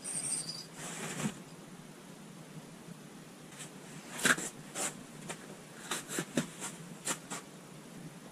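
Handling noise as an ice angler crouches by the hole and takes up his rod: a soft rustle at first, then a scatter of short, irregular clicks and taps from clothing, boots in the snow and the rod and reel.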